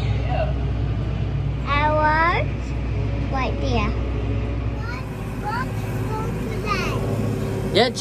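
Massey Ferguson 7615 tractor engine running as a steady low drone inside the cab. About five seconds in, its deepest hum drops away and the engine note changes.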